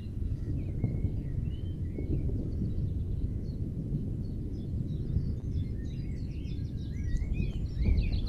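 Small birds chirping and twittering in the background over a steady low rumble on the microphone; the chirps come thicker about halfway through.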